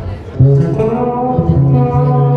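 Live band music: after a brief dip, a sustained chord of held notes comes in sharply about half a second in and rings on steadily.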